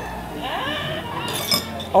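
A person's drawn-out vocal reaction sliding in pitch, then a brief clink of a metal fork against a dish about one and a half seconds in.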